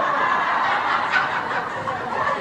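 An audience laughing together as a steady mass of many voices, with no single voice standing out.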